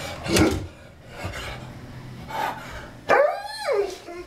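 German Shepherd barking at a truck in the street outside the window: four barks about a second apart, the last one longer and falling in pitch.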